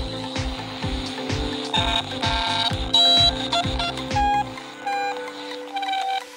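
Electronic beeps from toy Spider-Man walkie-talkies over background music with a steady beat. A warbling tone comes about two seconds in, then a loud beep and several short single beeps, while the beat drops out near the end.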